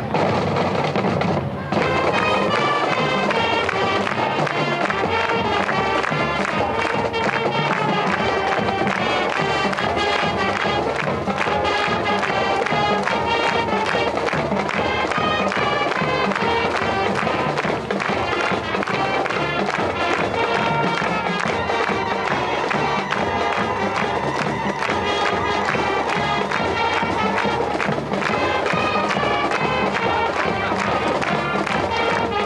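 High school marching band playing the school song: brass and woodwinds carrying the melody over a steady beat from the drumline and bass drums.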